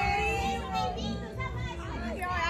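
Voices at a children's party, children's voices among them, talking and calling over one another with faint music underneath.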